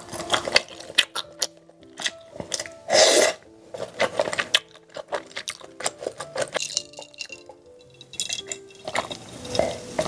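Close-miked eating sounds: scattered clicks of chewing and wooden chopsticks tapping on dishes, with one louder burst about three seconds in, over soft background music.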